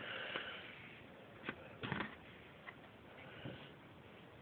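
Faint handling noise of cotton fabric being shifted and smoothed on a cutting mat, with a few soft taps and scuffs, two of them close together about one and a half to two seconds in.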